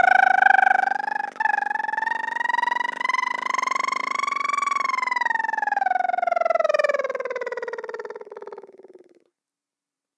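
A woman humming and whistling at the same time: one long note that glides up, then slowly sinks and fades out about nine seconds in, with a brief catch about a second in.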